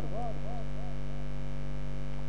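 Repeating echo of a man's last spoken syllable, the same rising-and-falling pitch coming back several times a second and dying away about a second in, from an echo effect on the recording. Underneath, a steady low electrical hum continues.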